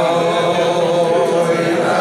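A man's voice chanting one long held note, shifting pitch near the end.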